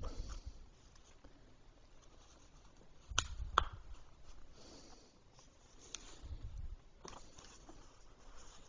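Faint handling of hard plastic ball-track pieces, with a few sharp clicks as they are pressed to snap together: two close together about three seconds in, then more near the end.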